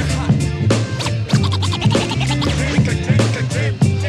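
Hip-hop DJ mix: a beat with a stepping bass line and steady drums, with turntable scratching over it.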